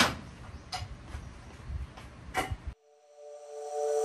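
A few light knocks and clicks over faint room noise, the loudest at the start. The sound cuts off suddenly about two and a half seconds in, and background music with steady mallet-like tones fades in.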